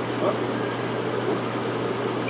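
Aquarium equipment running: a steady low hum under an even hiss of moving water.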